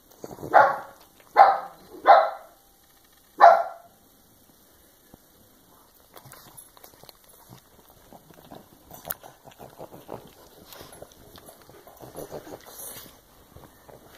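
A dog barks four short times in the first four seconds, then faint scattered rustling and ticking as it roots in the bedding.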